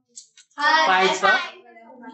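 A short spoken phrase from one voice, starting about half a second in, after a brief near-silent pause.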